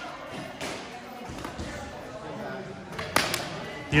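Training sticks striking each other in sparring: two sharp clacks in quick succession near the end, over low gym room noise with a few faint knocks.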